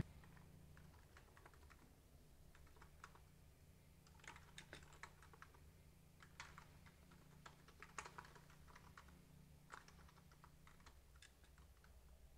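Faint typing on a computer keyboard: short, irregular bursts of keystrokes with gaps between them.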